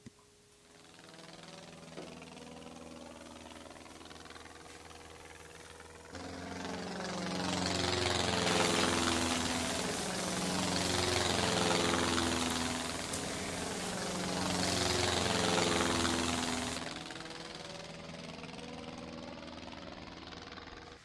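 Small battery-powered electric motor spinning a toy airplane's plastic propeller with a steady buzz, switched on with a click at the start. From about six seconds in it grows much louder, swelling and fading three times with its pitch bending up and down, then drops back to a quieter steady buzz near the end.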